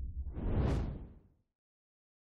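A whoosh sound effect that swells up and rises in pitch, then sweeps back down and dies away about a second and a half in, with a low rumble under it.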